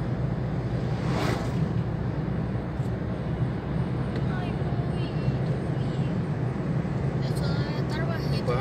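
Steady low road-and-engine drone inside a moving car's cabin. About a second in there is a brief rushing swell as an oncoming truck passes in the other lane.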